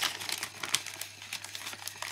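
Small clear plastic bags of earring hoops crinkling and rustling as they are handled, in a quick irregular run of crackles.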